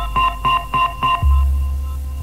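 Early-1990s hardcore rave music from a DJ mix: a riff of short, high electronic stabs at about three to four a second, giving way a little past the middle to a long, deep bass note.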